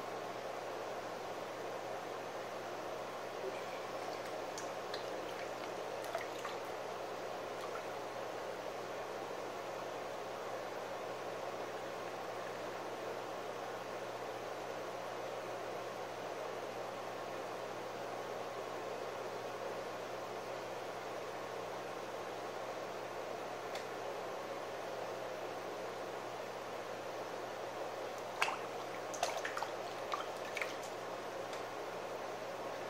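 Electric potter's wheel running steadily with a low hum while wet, slip-covered hands squish and slide over the spinning clay pot to smooth its walls. A few short clicks and taps come near the end.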